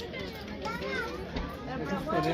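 Background voices of several people, children among them, talking and calling out at a moderate level.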